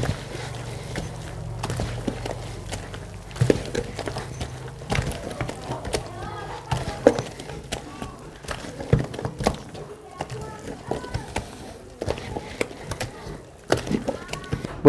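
Hands working a wet mix of eggs, sugar and margarine into flour in a stainless-steel trough: irregular squelches and knocks against the metal, with faint voices in the background and a low hum during the first few seconds.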